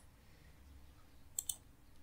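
Two quick computer mouse clicks close together about a second and a half in, over faint room tone.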